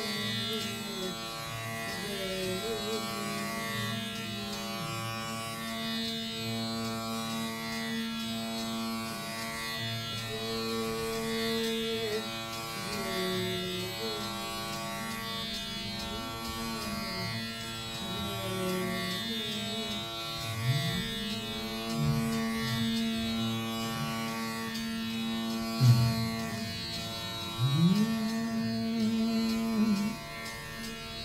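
Rudra veena playing a slow dhrupad passage in Raga Malkauns: plucked notes are sustained and bent in long glides, with deep upward pulls a few seconds before the end.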